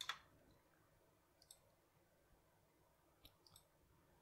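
Near silence broken by a few faint, short clicks of a computer mouse: one right at the start, one about a second and a half in, and a small cluster a little after three seconds.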